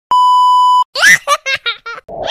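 A steady high-pitched test-tone beep, the kind played over TV colour bars, lasting under a second. It cuts off, and a quick run of short, high-pitched giggles follows, like a baby laughing, the first one the loudest.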